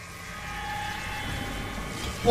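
Steady rumbling drone with a few faint held tones, swelling slightly at first and then holding: an edited-in transition sound effect.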